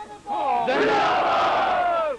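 A crowd of men shouting together in one long collective call, starting about a third of a second in. Many voices overlap at once.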